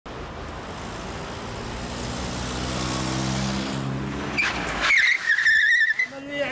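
A car approaching, its engine and road noise growing louder, then tyres squealing in a wavering high pitch for about the last second and a half as it brakes hard to a stop.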